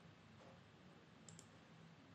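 Near silence: room tone, with a faint double click just past halfway through, typical of a computer mouse being clicked.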